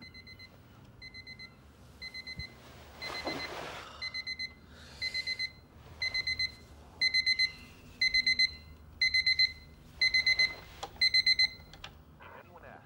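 Digital alarm clock beeping in quick bursts of about four beeps, roughly once a second, getting steadily louder.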